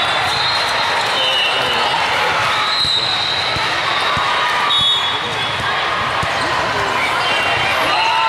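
Busy volleyball hall din from many courts: a constant crowd of voices, with balls being bounced and hit and short, thin, high squeaks throughout.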